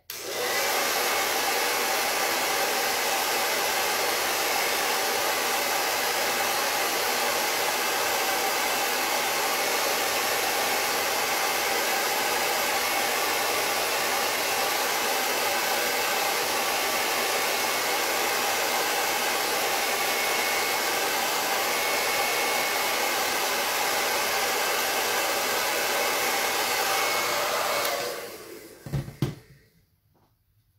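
Hand-held hair dryer running steadily on a high setting, blowing on wet black acrylic paint to dry it. It is switched off about two seconds before the end and winds down, followed by a few soft knocks.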